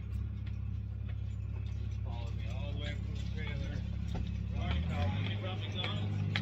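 An engine running steadily with a low drone, its note stepping up slightly about five seconds in.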